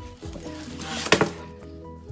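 A heavy laminated cabinet panel being lifted out of its cardboard box, with a brief scraping rush ending in one sharp knock about a second in, over steady background music.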